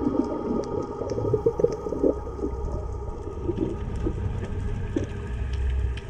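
Underwater sound picked up by a camera in its housing: a steady low rumble with a faint constant hum above it and scattered faint ticks and crackles.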